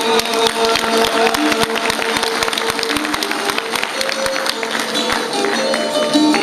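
Çifteli, the two-stringed Albanian long-necked lute, played alone in a fast strummed passage: a steady drone note under a plucked melody line, struck in quick rapid strokes.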